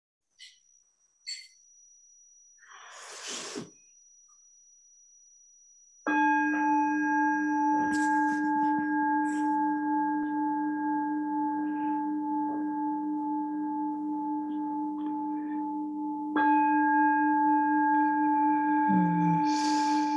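Meditation bell struck twice, about ten seconds apart. Each strike rings out long and fades slowly, marking the close of the meditation.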